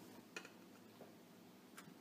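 Near silence with three faint, irregularly spaced ticks: a kitchen knife cutting through puff pastry onto the paper-covered counter.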